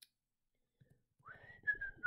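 A woman whistling softly through pursed lips: a single thin note that starts about a second in and slides gently downward, with breath noise under it.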